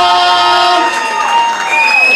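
Crowd cheering the announced winner, with a long drawn-out shout held over the cheering, the announcer stretching out the name over the PA microphone.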